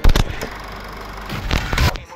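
Editing sound effect at a video transition: a loud hit right at the start, a noisy wash, and a second loud burst near the end that leads into music.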